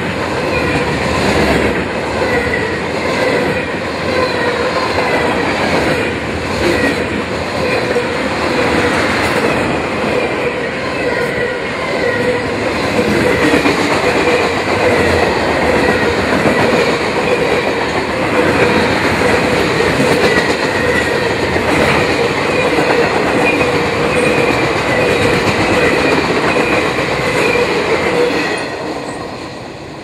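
Freight cars of a long train rolling past close by: a steady loud rumble and rattle of steel wheels on the rails. It fades near the end as the last car goes by.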